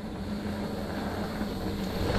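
Mountain bike rolling along a dirt trail: steady tyre and wind noise on the microphone, with a steady low hum underneath.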